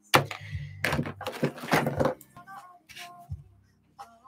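A few loud knocks and thuds of hands and a marker being handled on a desk in the first two seconds. Then soft background music with held notes comes in, about halfway through.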